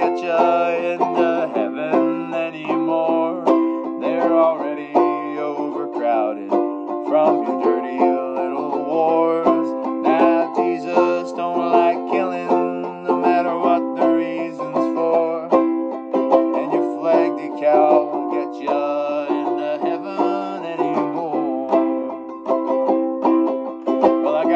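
Banjo ukulele strummed in a steady rhythm, playing chords through an instrumental break between sung verses.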